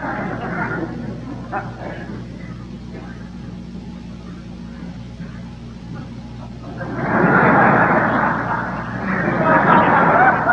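Theatre audience laughing, fading about a second in, then two loud bursts of laughter from about seven seconds in, over a steady low electrical hum.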